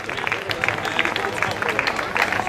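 Applause from a small crowd: many quick, irregular hand claps.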